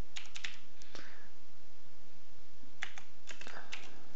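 Computer keyboard typing: a few keystrokes in the first second, a pause of about a second and a half, then a quick run of keystrokes near the end, over a steady hiss.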